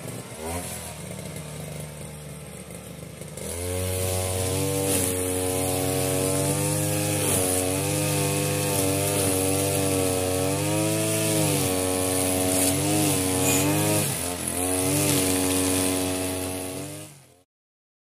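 Two-stroke petrol string trimmer (brush cutter) idling, then opened up about three and a half seconds in and run hard while cutting grass, its engine speed rising and falling over and over. The sound cuts off suddenly near the end.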